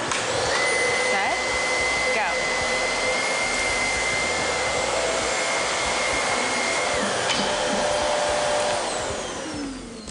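Two upright vacuum cleaners, a Shark Navigator Lift-Away and a Dyson ball vacuum, running at once as they are pushed over carpet: a steady motor whine with two held tones. Near the end they wind down, the sound falling in pitch and level.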